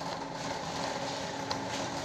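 Wire shopping cart rolling along a supermarket aisle: a steady rolling rumble with a few small clicks and rattles.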